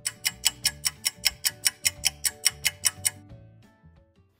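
Clock-ticking sound effect, about six quick ticks a second over a few held music notes, cutting out about three seconds in; a cue for time passing during a two-minute skip.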